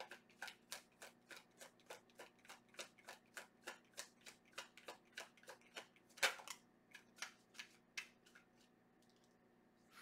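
A deck of tarot cards being shuffled by hand: a steady run of soft card clicks, about four a second, with one louder snap about six seconds in. The clicks stop about eight and a half seconds in.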